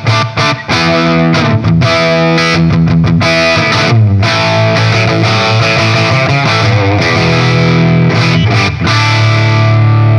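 Electric guitar played through a Marshall 1959HW Super Lead plexi head on its cleaner channel, volume at about two, giving a slightly broken-up tone. Chords and notes ring out and change every couple of seconds.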